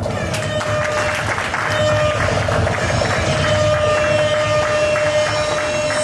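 Audience applause and cheering break out suddenly and continue, with music playing a long held note underneath.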